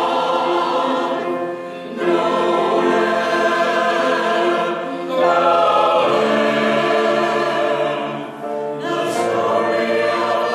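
Mixed church choir singing sustained chords in slow phrases, with short breaks between phrases about two, five and eight and a half seconds in.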